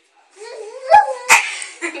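Muffled, squealing laughter from girls with their mouths stuffed full of marshmallows, the pitch sliding up and down over breathy noise, with two sharp clicks about a second in.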